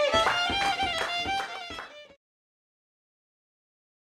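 Violin playing a melody over accompanying struck or plucked notes, fading and cutting off about two seconds in.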